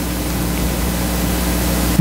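Steady background hiss with a low electrical hum, slowly growing a little louder.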